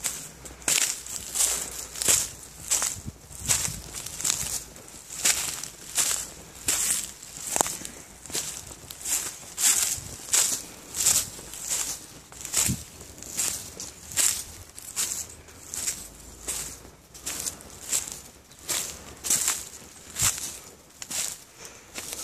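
Footsteps crunching through dry leaf litter on a forest floor at a steady walking pace, about three steps every two seconds.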